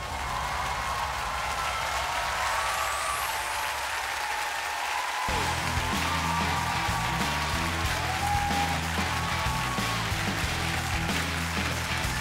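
Studio audience applauding, with music under it. A low, rhythmic bass line comes in suddenly about five seconds in.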